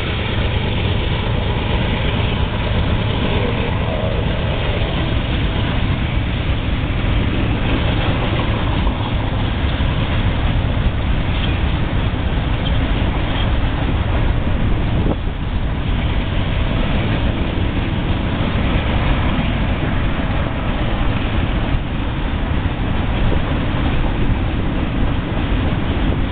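Freight train cars rolling past close by: steel wheels on rail making a steady, loud rumble.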